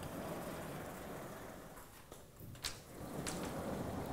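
Chalk on a blackboard: scratching, then a few sharp taps about two to three seconds in, over a steady hiss of room noise.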